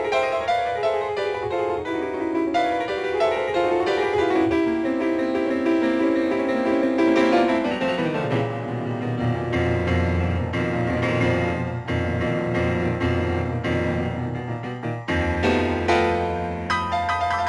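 Grand piano played solo and fast: quick runs of notes in the middle and upper range, then a downward run about halfway through brings in heavy low bass notes beneath them. A showpiece that takes a lot of practice to play.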